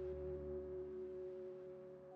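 Faint ambient background music: a drone of two held tones over a low hum, slowly fading.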